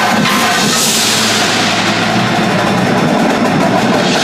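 Indoor percussion ensemble playing loudly: marching drumline with a front ensemble of mallet keyboards, synthesizer, electric guitar and drum kit. A bright high wash swells in about a second in over a steady low bass note.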